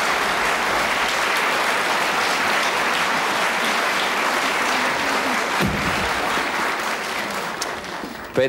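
Studio audience applauding steadily, thinning out near the end.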